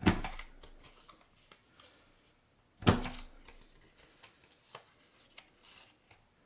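Detailed Trio corner-rounder punch pressed twice, a sharp click at the start and another about three seconds in, as it rounds the corners of cardstock. Lighter clicks of the paper being repositioned in the punch fall between.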